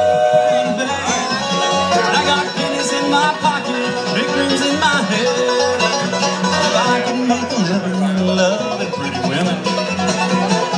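Live bluegrass band playing an instrumental passage, with banjo and fiddle over guitars and a steady bass beat about twice a second.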